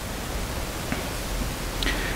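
A pause in speech filled with a steady hiss of room tone and a faint low hum, with one faint click about a second in.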